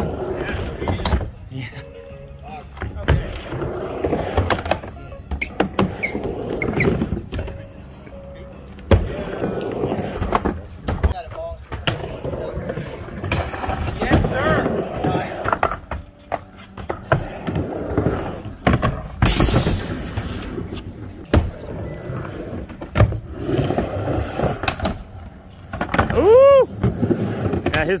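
Skateboards rolling back and forth on a wooden mini ramp: wheels rumbling on the ramp surface, broken by frequent sharp clacks and knocks of boards and trucks hitting the metal coping and deck.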